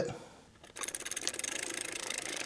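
Ratcheting wrench clicking in a fast, even run while tightening a bolt on an alternator mounting bracket, starting under a second in.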